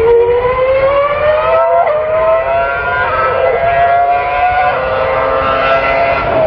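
Racing car engine at high revs, accelerating through the gears. Its pitch climbs and drops back at each of three upshifts.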